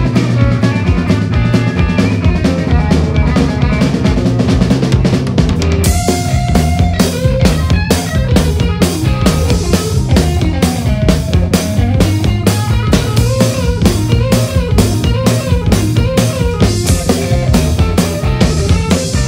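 Blues-rock band music with a driving drum kit and electric guitar. About six seconds in, cymbals come in and a guitar figure starts repeating.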